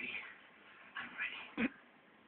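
A domestic cat meowing twice, short calls that rise and fall, about a second apart. A short sharp thump near the end.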